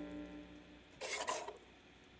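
Background music fading out, then about a second in a short squish of pink slime being squeezed and pulled apart by hands.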